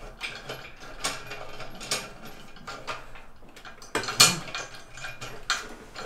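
Irregular metallic clicks and rattles from a crane-hung V8 engine and gearbox as they are tilted and shifted on the crane chain, with one louder clank about four seconds in.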